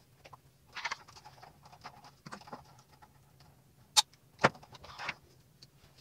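Faint rustling of a toy box's clear plastic packaging as a small figure is pulled out of its moulded plastic tray, with two sharp plastic clicks about half a second apart near the four-second mark.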